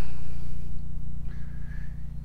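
A generator's engine running at a steady speed, a low even hum that eases slightly in loudness.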